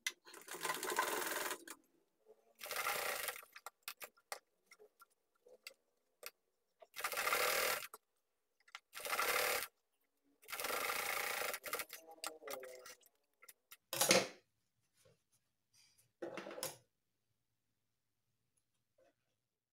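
Domestic sewing machine stitching through layers of denim in several short runs of about a second each, stopping and starting, with small clicks in the pauses between runs.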